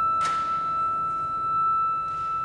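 Concert flute holding one long, steady high note.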